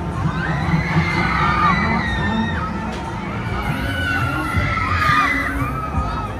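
Riders on a Huss Flipper thrill ride screaming and shrieking as the gondolas spin and tip, many overlapping wavering cries, over the ride's music with a bass beat underneath.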